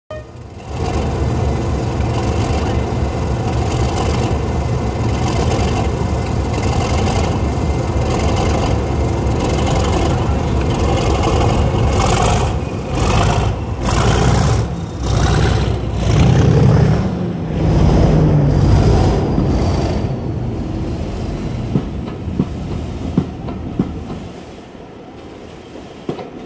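Class 37 diesel locomotive's English Electric V12 engine thrashing under power as it pulls a train away from a standstill, surging loudest for several seconds as the locomotive passes directly below. It then dies away as the coaches roll by, with a few sharp clicks near the end.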